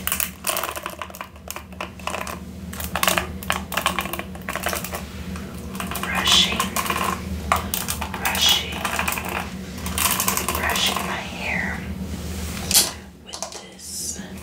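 Long fingernails tapping and clicking rapidly on a plastic Wet Brush paddle hairbrush, with soft whispering mixed in.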